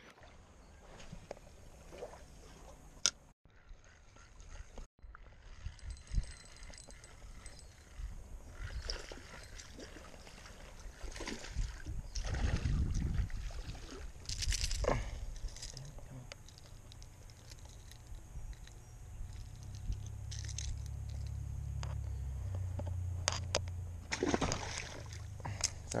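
Water splashing and sloshing at a lake's edge in short bursts, loudest a little past the middle, with a low rumble in the later part.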